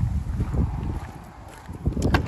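Wind buffeting the phone's microphone in an uneven low rumble, with a sharp click near the end as the Jeep Wrangler's rear door handle is pulled.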